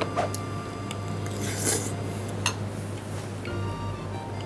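Background music with steady tones, over a few light clinks of eating utensils against a bowl and a short scraping rustle partway through.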